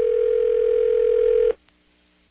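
A telephone ringback tone, heard on the calling end of the line: one steady electronic ring lasting about a second and a half, which then cuts off as the call rings through.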